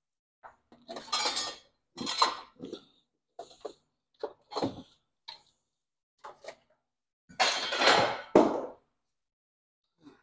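Metal clanking and scraping as a stock turbocharger and exhaust manifold assembly is worked loose and lifted out of the engine bay: irregular clinks, with the longest, loudest scrape about three quarters of the way through.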